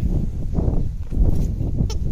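A golden retriever mouthing and chewing a plush donut toy, making low, rough grumbling noises.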